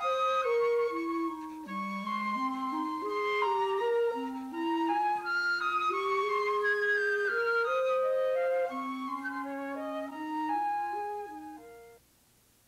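Flute and clarinet playing a duet, the clarinet carrying a lower moving line beneath the flute's melody. The music fades out just at the end.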